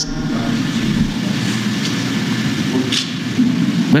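A steady, fairly loud rumbling noise with no speech in it.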